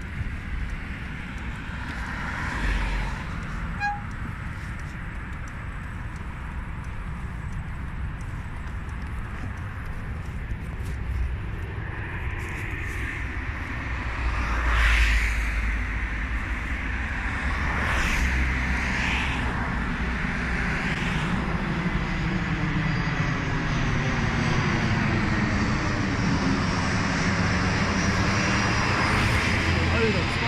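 Airplane flying over, its engine noise building through the second half with a slow, swirling sweep in its tone as it comes closer.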